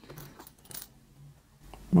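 A few light clicks and a faint rustle in the first second as hands pick up sewing pins and handle lycra fabric to pin it.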